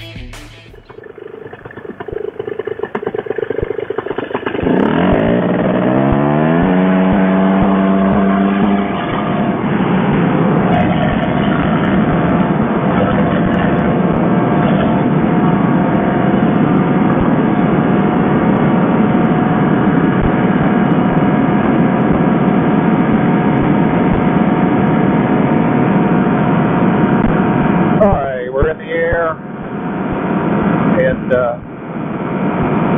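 Fresh Breeze Monster two-stroke paramotor engine on a trike, throttled up to full power with its pitch climbing in steps over a few seconds. It then runs steadily at high power through the takeoff run and climb.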